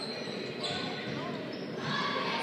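Background noise of a large indoor hall: faint, echoing voices and general room noise, with a thin high whine in the first part.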